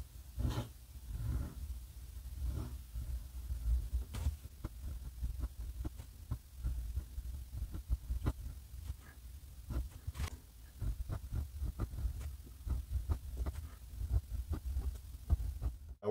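A steel untipped flex fountain-pen nib scratching and ticking across paper in many short strokes during cursive writing, over faint low thumps of the hand resting on the desk.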